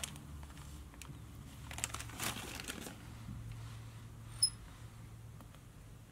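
Soft rustling and crinkling as a pinch of brown seal fur dubbing is pulled out and handled, with one sharp little click about four and a half seconds in.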